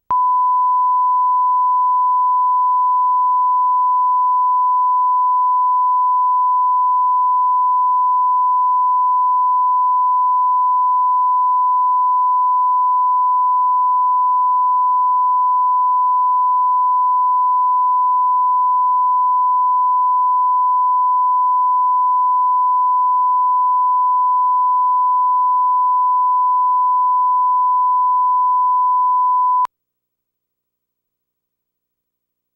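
A 1 kHz line-up tone: one steady pure pitch with no change. It is the audio reference played with colour bars at the head of a tape to set recording levels, and it cuts off suddenly just before the countdown starts.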